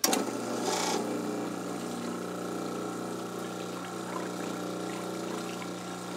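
GrowoniX GX Booster (BP6010) booster pump for a reverse osmosis water filter switching on suddenly and then running with a steady hum. A brief hiss comes about a second in.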